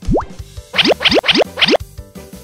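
Children's song backing music with cartoon sound effects: one fast rising sweep at the very start, then four quick rising sweeps in a row, about a third of a second apart, with a bright sparkle over them.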